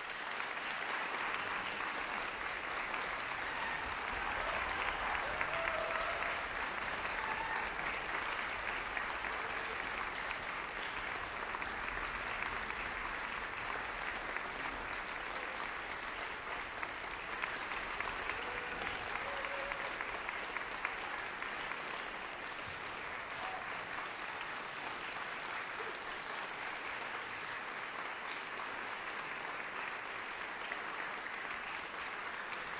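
Audience applauding, a dense steady clapping that holds at an even level throughout.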